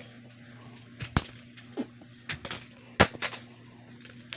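A few sharp clicks and taps, the loudest about three seconds in, over a faint steady hum.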